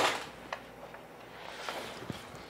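Faint handling noises from a printed DTF transfer film being taken off the printer: a sharp rustle at the start, then quiet rustling with two soft clicks, about half a second in and near the end.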